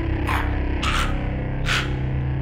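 Soundtrack music: a steady, sustained low drone with three short, sharp hits spaced under a second apart.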